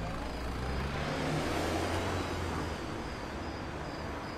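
Honda Fit hatchback engine pulling away at low speed, a steady low hum that fades after about two and a half seconds as the car drives off.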